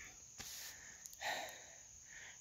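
Faint breathing close to the microphone, with a light click about half a second in.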